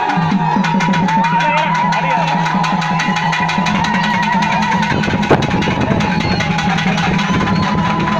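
Festival music: fast, even drumming under a high, wavering melody line and a low steady drone, with one sharp knock about five seconds in.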